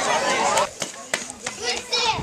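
Crowd of children chattering and calling out, cut off abruptly about two-thirds of a second in; after that it is quieter, with a few sharp clicks and brief voices.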